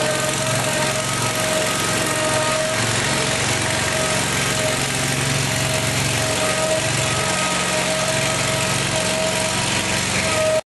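Honda GX670 24-horsepower V-twin engine running steadily as the hydraulically driven homemade tank drives, with a steady whine riding over the low engine rumble.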